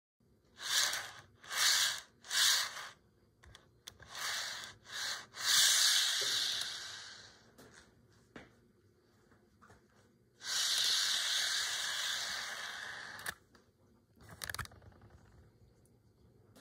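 HO scale passenger car on turned metal Roll-Tru wheels rolling along model railroad track, pushed by hand: a light hissing rolling sound in three short pushes, then longer rolls that fade out, and a steady roll of about three seconds later on.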